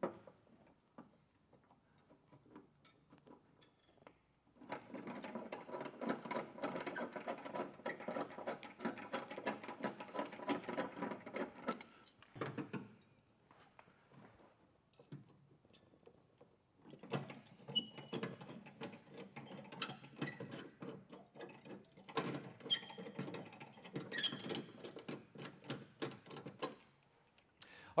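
Hand rivet nut (nutsert) tool being worked on a car door's sheet metal, in two spells of dense mechanical clicking and rattling, about seven and ten seconds long, with a pause between as the next nutsert is set.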